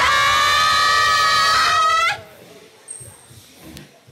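A single high-pitched vocal shout, held steady for about two seconds, bends up in pitch and cuts off suddenly. Only a faint low background with a few soft thumps is left after it.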